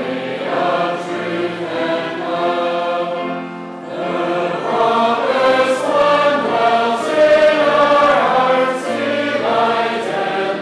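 Church congregation singing a hymn together in sustained notes, with a short breath between lines about four seconds in.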